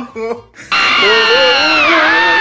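Several voices yelling together in long, drawn-out cries that start loudly just under a second in and slowly fall in pitch, after a brief bit of speech.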